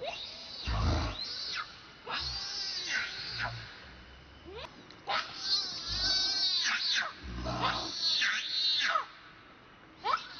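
Infant macaque crying: high-pitched screaming calls that waver up and down in pitch, in about four bouts with short pauses between them.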